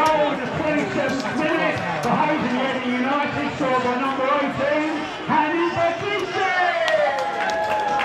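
Indistinct voices talking and calling over one another throughout, with no clear words: football-ground crowd and players' voices, with a few sharp knocks near the end.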